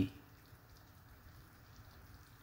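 Faint, soft crackling of chicken pieces cooking slowly in oil and their own juices in a pan, with a few small scattered pops.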